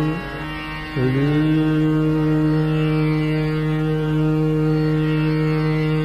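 Hindustani classical vocal in Raag Darbari Kanhra over a tanpura drone. A male voice slides up into a long held note about a second in and sustains it steadily.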